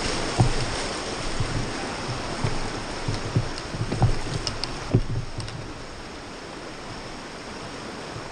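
Turbulent river water rushing around a rowed raft, with irregular low thumps of water hitting the raft for the first five seconds, then a steadier, quieter rush.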